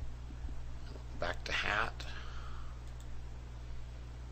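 A brief mumbled word from a man's voice about a second in, over a steady low hum in the recording.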